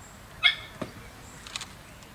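A dog barks once, short and sharp, about half a second in, followed by a couple of faint clicks.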